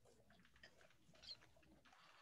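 Near silence: faint room tone with two faint, brief ticks, about half a second and a second and a quarter in.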